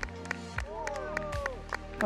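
Background music: held synth tones with sliding notes over a soft, steady beat.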